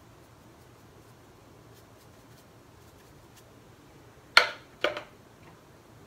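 Two sharp clacks about half a second apart, about four and a half seconds in, as a paintbrush is knocked against a hard surface while being set aside, after a few faint ticks of the brush.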